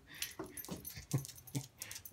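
A dog making a few short whimpers and huffs, one after another.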